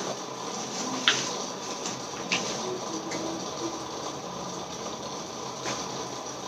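Hands handling and tearing open a plastic mailer bag: faint rustling, with three short, sharper crackles spread through.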